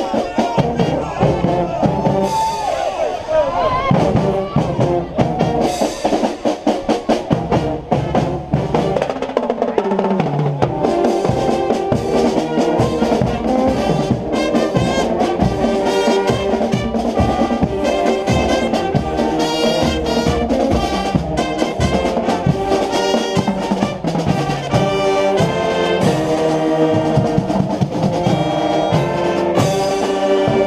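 Marching brass band playing: trumpets, mellophones and sousaphones sound over a steady beat of marching drums.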